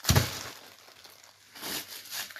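A plastic-wrapped frozen block of raw meat is handled with a sudden thump, its stiff wrapping crackling and crinkling briefly, then rustling lightly with a small crackle near the end.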